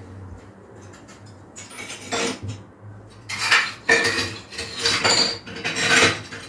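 Hard household objects clattering as they are handled, in about five short bursts starting about a second and a half in.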